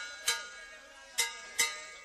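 Music: four sharp plucked-string notes in two pairs about a second apart, each ringing briefly and fading.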